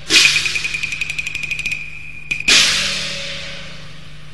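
Cantonese opera percussion: a cymbal crash that rings on a steady high note, a fast roll of light strikes for about a second and a half, then a second crash about two and a half seconds in that rings out and fades.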